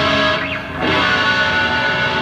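Live rock band's electric guitars playing through stage amplifiers, with chords held and ringing.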